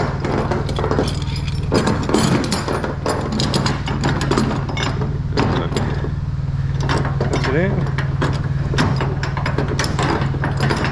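Steel tie-down chain clinking and rattling on an aluminum flatbed deck as it is handled with a lever load binder, many sharp clinks and knocks throughout. Under it runs a steady low engine hum.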